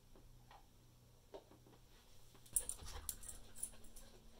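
A dog rushing in across a carpeted room, starting with a sharp knock about two and a half seconds in and going on as quick clicks, patter and rustling. Before that, faint light taps as paper cups are set down on the carpet.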